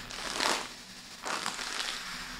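Breathing hard into a crumpled bag held over the mouth, the bag crinkling with each breath: two breaths about a second apart, a mock panic hyperventilation.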